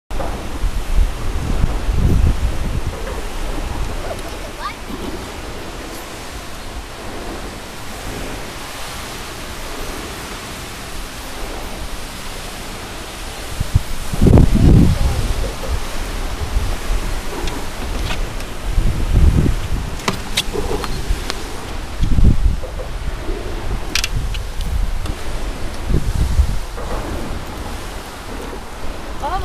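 Wind buffeting the camera microphone: a steady hiss with several low rumbling gusts, the loudest about halfway through.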